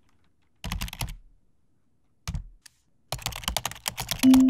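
Computer keyboard typing: a short run of key clicks about half a second in, a few more near two and a half seconds, and a quicker run toward the end.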